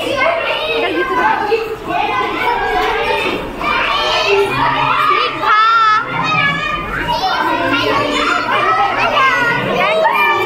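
A classroom full of excited children all shouting and chattering at once, with one child's high wavering yell standing out about five and a half seconds in.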